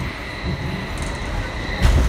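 Sofia metro carriage running: a steady rumble with a faint high whine, and a single loud thump near the end.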